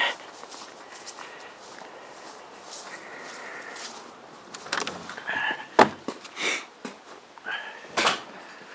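Footsteps across grass, then a cluster of sharp clicks and a knock about five to six seconds in as a door is unlatched and pushed open.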